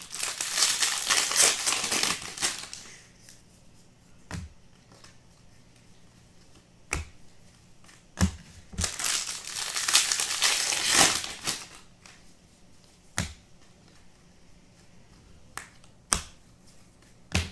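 Foil-plastic trading card pack wrappers crinkling as they are handled and torn open, in two long spells. Between them come single sharp taps of a card stack on the table.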